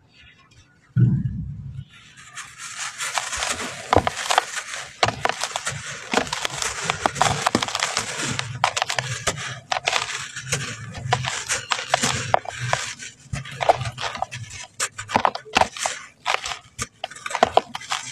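A molded block of red sand crumbled in the hands over a basin of loose sand. A dull thump comes about a second in, then steady gritty crunching and crackling with sharp cracks as the block breaks and grains fall.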